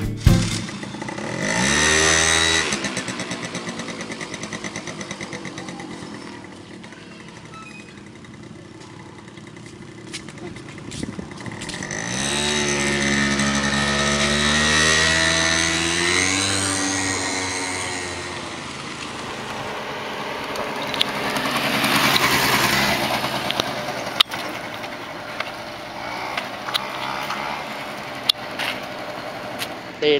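Honda Giorno scooter's small engine revving up as it pulls away, its pitch rising and then falling twice. A louder swell comes about two-thirds of the way through, like the scooter passing close by.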